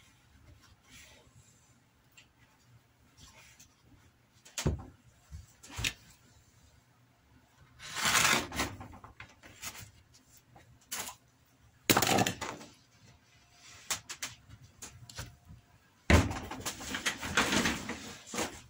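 Suede lining being handled and trimmed with a utility knife on a plywood bench: scattered rustles, scrapes and knocks between quiet stretches, with the loudest noise near the end.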